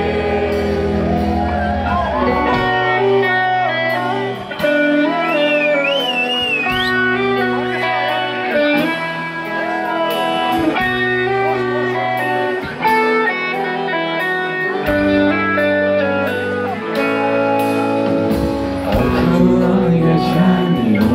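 Rock band playing live through a club PA: electric guitars over bass and drums. A high wavering line rises above the band about five seconds in.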